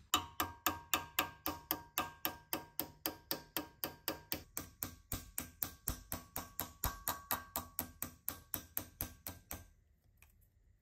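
Small brass-faced hammer tapping a sheet-metal part over a steel form held in a vise, a quick even series of light strikes at about four a second with a faint metallic ring. The tapping stops just before the end.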